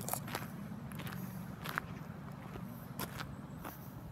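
Footsteps of a person walking on paving, a series of irregular steps and scuffs, over a steady low background hum.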